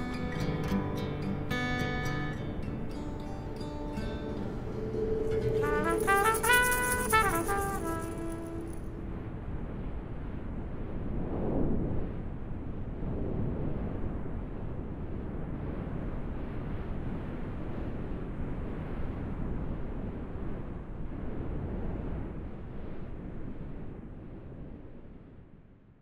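A band with trumpet, bass and guitar plays the song's closing bars, ending on a rising brass phrase about nine seconds in. A steady rushing noise of wind and surf follows and fades out at the very end.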